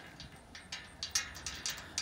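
Light metallic clicks and rattles, scattered and irregular, from a farm gate being closed and latched.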